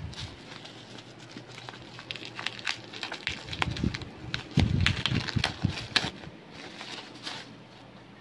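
Plastic bubble wrap crinkling and crackling as it is pulled off a small cardboard box. There are scattered sharp crackles throughout, with a few louder handling thumps about halfway through.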